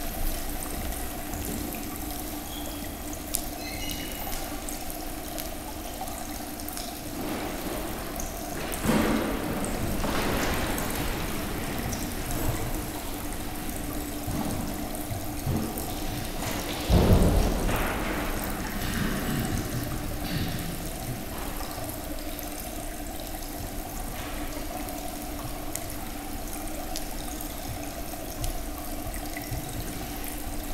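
Steady trickle of water from a small rock fountain, running under a low steady hum, with two louder bumps, the stronger just past halfway.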